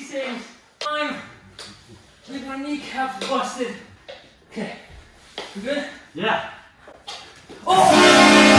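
Men's voices talking and calling out in short bursts, with no clear words. Music cuts in loud just before the end.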